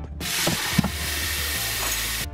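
Tap water running hard into a small soapy saucepan in a stainless steel sink. It is a steady hiss of splashing water that starts just after the beginning.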